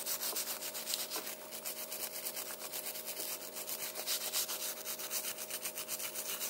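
Small brass wire brush scrubbing the die-cast metal base of a 1968–70 Hot Wheels redline car, a dry scratchy rasp of quick back-and-forth strokes, to clean off corrosion.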